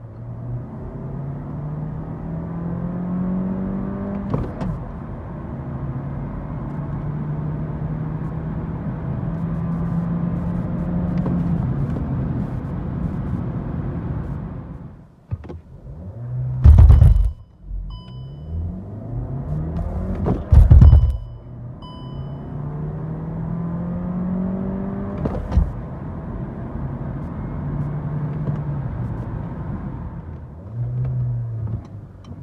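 Volkswagen Golf 8 R's turbocharged 2.0-litre four-cylinder heard from inside the cabin at full throttle: revs climb to a gearshift about four seconds in, then settle into a steady drone. About halfway the engine quietens as the car stops, with two loud thumps and a few short electronic beeps. It then pulls hard again from a standstill, revs rising with another upshift a few seconds before the end.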